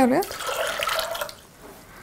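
Water poured into a stainless-steel pressure cooker over soaked chickpeas, splashing and running for about a second and a half before it stops.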